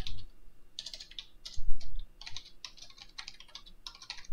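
Computer keyboard typing: a quick run of keystrokes, with one heavier keystroke about one and a half seconds in.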